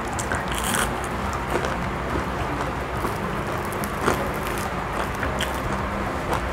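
Crisp fried dal vada (parippu vada) being bitten into and chewed: a sharp crunch under a second in, then a few scattered small crunches, over a steady low background hum.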